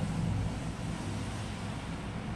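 Steady low background hum with an even hiss.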